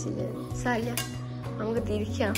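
Background song with a singing voice over steady low notes. About a second in there is a sharp clink, as of a hand or fingers against a steel plate.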